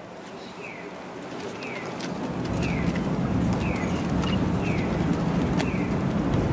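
A short, high, falling chirp repeats about once a second. A low rumbling noise swells in from about two seconds in and becomes the loudest sound.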